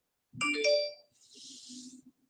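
A short electronic chime, like a phone or chat notification, sounds about half a second in and is the loudest sound here. It is followed by a soft swish of hairbrush bristles stroked across short, waved hair, one of a run of evenly spaced brush strokes.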